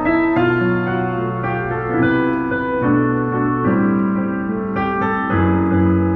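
Roland HP205 digital piano played with both hands in a slow, legato style: chords change about every second over low bass notes that are held for a second or two.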